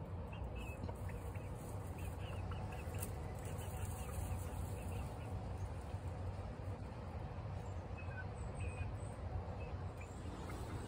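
Backyard hens giving soft, scattered calls, over a steady low rumble of wind on the microphone.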